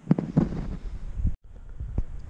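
Wind buffeting the microphone with a low rumble, and a few short knocks of hand-tool handling in the first half second. The sound cuts out suddenly for an instant past the halfway point.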